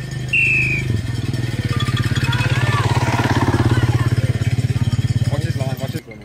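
An engine running close by with a rapid, even pulsing beat that swells and then drops away just before the end, with a brief high whistle-like tone near the start.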